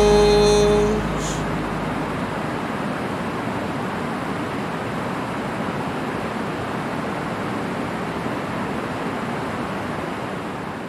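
The song's last held chord rings out and stops about a second in, then a steady rush of water pouring over a dam spillway.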